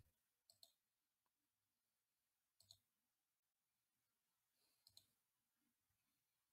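Near silence with three faint clicks about two seconds apart: a computer mouse being clicked.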